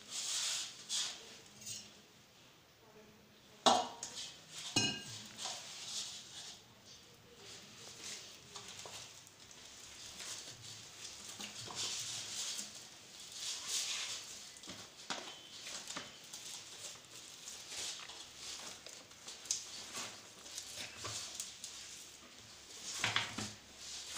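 Hands kneading nearly finished wheat-flour dough in a stainless steel bowl: irregular soft squishing and pressing. A sharp knock on the steel bowl comes about four seconds in, and another about a second later rings briefly.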